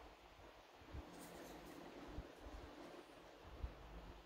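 Near silence: room tone, with a few faint low bumps and a light rustle as a plastic model car body is handled.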